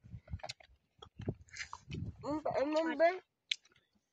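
Chewing and small wet clicks from people eating rice by hand off a banana leaf, with a short spoken phrase just past the middle and a sharp click near the end.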